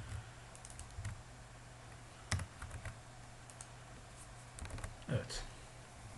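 Scattered computer keyboard keystrokes, a few short clicks at a time with pauses between, as code is copied and pasted into an editor; a low steady hum runs underneath.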